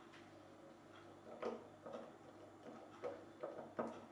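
Faint clicks and taps of a plastic spray head being fitted onto a small glass bottle, about six short knocks spread over the second half, over a low steady hum.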